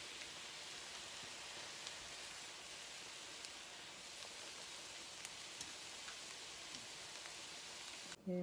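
Stuffed potato croquettes (papas rellenas) frying in a pan of olive oil: a steady, soft sizzle, with a few faint clicks of kitchen tongs.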